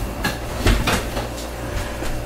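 A few short knocks and clicks, the loudest a low thump less than a second in.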